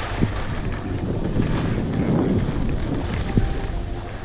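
Wind buffeting an action camera's microphone while riding downhill through soft snow, with the hiss of snow sliding underfoot. A couple of short knocks from bumps in the run.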